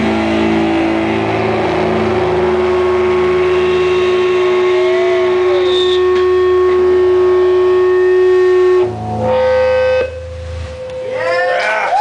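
Distorted electric guitar and bass ringing out on long held notes and feedback as a live metal song winds down. The held tones shift about nine seconds in, and swooping pitch glides come in near the end.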